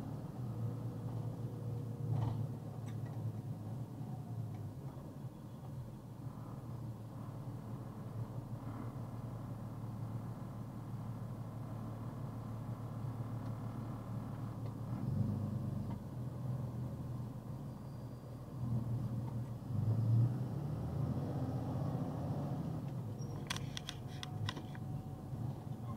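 Box truck's engine and road noise heard from inside the cab: a steady low rumble as it drives slowly, stops, and pulls away again, swelling slightly as it picks up speed in the second half.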